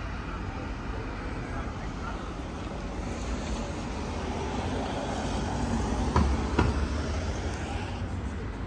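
City street traffic noise: a steady low rumble of passing vehicles with a wash of background noise, and two short knocks about six seconds in.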